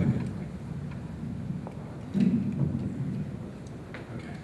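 Microphone handling noise: low rumbling and rustling as a troublesome microphone is adjusted, with a loud thump right at the start and another about two seconds in.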